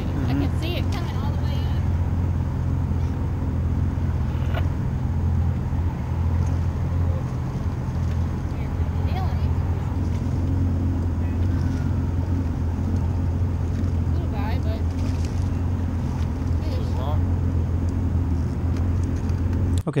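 Boat engine running with a steady low hum, under water and wind noise.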